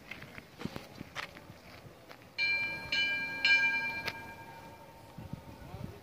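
A metal bell struck three times, about half a second apart, each strike ringing with a clear, several-toned ring that fades away over a couple of seconds.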